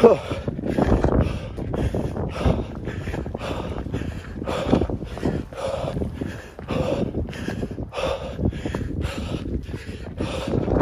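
A man breathing hard and fast through an open mouth, about two loud breaths a second: out of breath from running.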